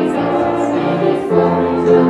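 Youth choir singing together in held, sustained notes.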